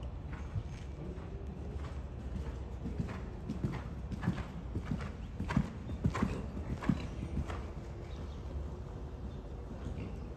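A horse cantering on sand arena footing, its hoofbeats coming in a steady three-beat rhythm. The hoofbeats grow louder from about three seconds in as the horse passes close by, then fade as it moves away.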